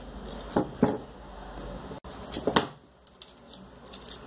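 Handling noises of a ribbon bow being worked by hand: a few short light clicks and knocks, the first two close together about half a second in and another about two and a half seconds in, with soft rustling between. A faint steady high tone runs underneath.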